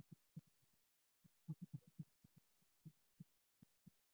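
Faint, irregular soft knocks of chalk strokes against a blackboard while a word is written, about a dozen dull taps with short gaps between.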